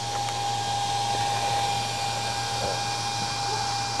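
Small electric fan running steadily, blowing air through a homemade solar air-heater collector: an even whirring hiss with a faint constant whine and low hum.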